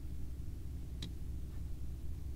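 Low steady hum of room tone, with one faint click about a second in.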